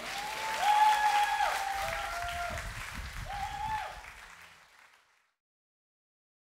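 Audience applauding, with a few long high-pitched cheers over it, fading out about four to five seconds in.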